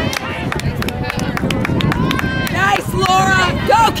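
Sideline spectators' voices calling out at an outdoor youth soccer game, building to shouts near the end. A rapid run of sharp clicks fills the first couple of seconds.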